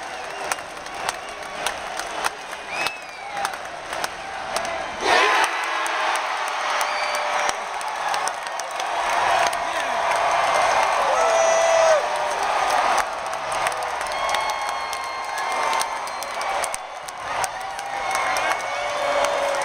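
Large ballpark crowd cheering and shouting, with scattered whoops. The cheer surges suddenly about five seconds in and builds to its loudest around twelve seconds, as the home team wins the game.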